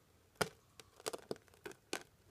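A few sharp clicks and knocks, the loudest about half a second in and several softer ones after it, typical of a handheld camera being handled.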